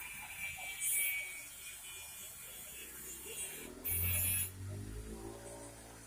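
A motor vehicle engine sets in about four seconds in and runs with a steady low hum. Two short, loud hissing bursts come before it, about a second in and again as the engine sound begins.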